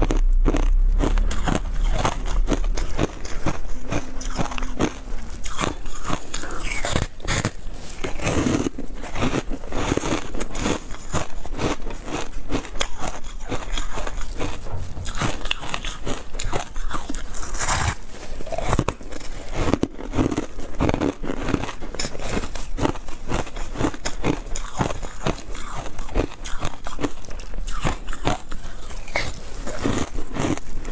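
Close-miked biting and chewing of porous refrozen shaved ice, a dense run of crisp crunches and crackles throughout.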